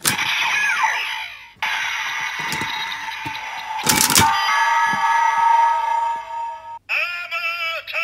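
A Bandai DX Ziku-Driver toy transformation belt with the Den-O Climax Form Ridewatch inserted, playing its electronic standby music and transformation sound effects. It opens with a click and a short falling electronic sound. A loud click comes about four seconds in as the belt is spun. The music cuts off near the end and gives way to a warbling electronic voice-like sound.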